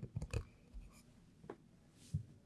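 Faint handling noise at a lectern: a few soft knocks and rustles as the gooseneck microphone and lectern are touched, then near quiet with one small click about one and a half seconds in.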